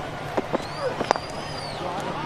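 Cricket bat striking the ball: one sharp knock about a second in, after a couple of fainter taps, over a steady low hum from the ground.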